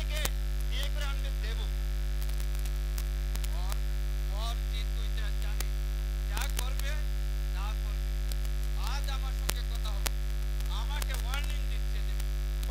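Loud, steady electrical mains hum in the stage's amplified sound system, with brief faint bits of speech every few seconds and a few sharp clicks.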